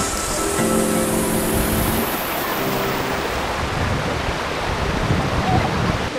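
Steady rushing of a waterfall and rocky mountain stream. Soft background music notes sound over it for the first few seconds and then stop.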